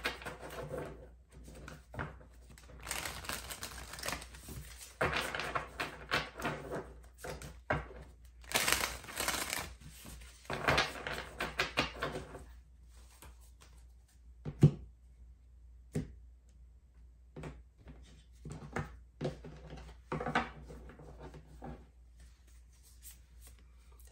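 Tarot cards being shuffled by hand, a dense papery rustle with many small clicks for about the first twelve seconds. After that come a few isolated taps and one sharp knock about fifteen seconds in.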